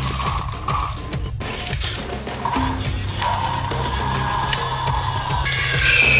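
Background music over the clicking, ratcheting run of a motorized toy dinosaur's plastic gears.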